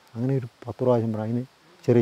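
Only speech: a man talking in short phrases with brief pauses.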